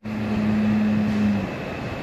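Loud, steady rushing drone of the ventilation fans in a cattle shed, with a low steady hum that stops about one and a half seconds in.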